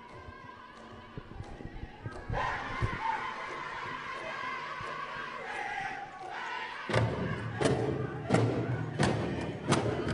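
Powwow drum group: singing starts about two seconds in, and from about seven seconds the big drum comes in with steady heavy beats, about three every two seconds, under the singers' voices.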